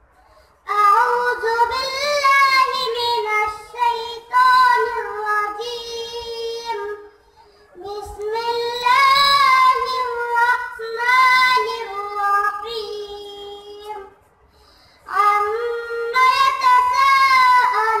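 A young boy reciting the Quran in a high, melodic chant. He sings three long phrases, with short pauses for breath between them.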